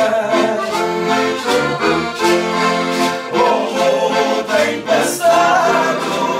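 Two accordions playing a lively traditional Portuguese dance tune, with several voices singing along and a pair of hand shakers keeping the beat.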